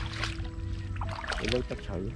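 Water splashing and sloshing as a woven bamboo basket is scooped through shallow muddy water, in a few short strokes. Background music with steady held tones runs underneath, and a brief voice comes in about one and a half seconds in.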